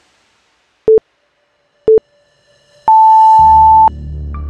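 Interval-timer countdown beeps: two short, low beeps a second apart, then one longer, higher beep lasting about a second, marking the end of an exercise interval.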